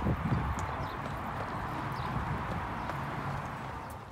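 Footsteps of several people walking on a concrete sidewalk, with a steady rushing noise behind them.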